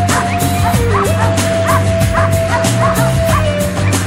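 Music with a steady fast beat and a long held tone, with a dog barking in quick repeated yips, several a second.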